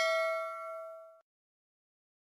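Notification-bell ding sound effect from a subscribe-button animation: one bell strike ringing and dying away about a second in.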